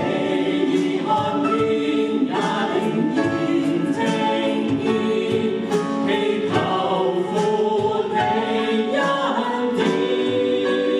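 A mixed worship team of men and women singing a Mandarin Christian worship song together into microphones.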